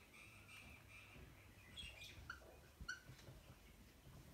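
Near silence: faint room tone with a few short, faint high chirps.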